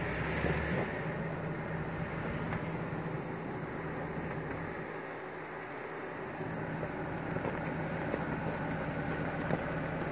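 Jeep Wrangler's engine idling with a steady low hum while the Jeep crawls slowly forward over a rocky dirt trail.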